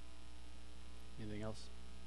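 Steady electrical mains hum in the recording, with a brief vocal sound from a person a little after a second in.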